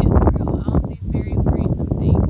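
A woman's voice over a loud, uneven low rumble.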